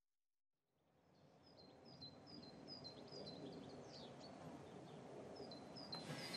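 Outdoor evening ambience fading in out of silence: a low, even background hum with a bird repeatedly chirping short high notes, about three a second, growing louder.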